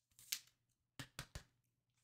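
Faint handling of a trading card in a plastic sleeve: a soft rustle, then three quick light clicks about a second in.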